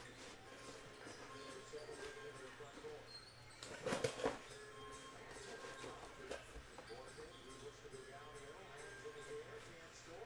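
Faint background music and voices, with a short cluster of knocks about four seconds in.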